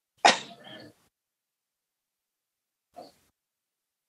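A person sneezing once, a sharp loud burst about a quarter second in that dies away within a second, heard over a video call. A brief faint sound follows near the end.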